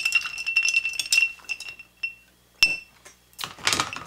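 Metal bar spoon stirring ice cubes in a rocks glass, clinking quickly against the glass, which rings with a steady tone, for about two seconds. After a short pause there is one sharp clink.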